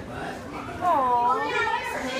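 Children's voices and chatter, with one child's high voice dipping and then rising in pitch about a second in.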